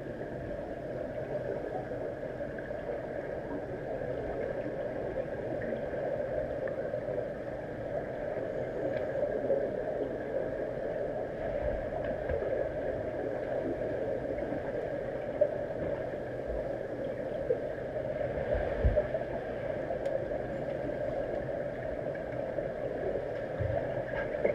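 Steady underwater hum of a swimming pool, heard through a waterproof camera housing, with a few brief low knocks in the second half.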